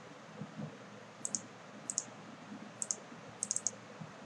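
Computer mouse clicking in four quick groups, each a double or triple tick, as the corners of a new polygon are placed on a map.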